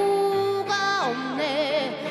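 A woman singing with keyboard accompaniment: she holds one long note, then moves into a new phrase about a second in, her voice wavering in pitch.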